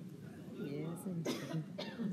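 A person coughing twice in the second half, over low voices in the room.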